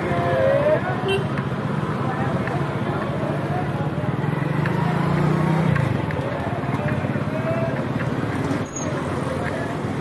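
Busy street traffic: motorbike, scooter and auto-rickshaw engines running and passing close, mixed with the voices of people walking by. One engine hum grows louder in the middle and falls away about six seconds in.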